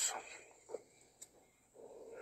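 A pause in a man's talk: his last word trails off at the start, then it goes nearly quiet with one faint click just past the middle and a soft breath near the end.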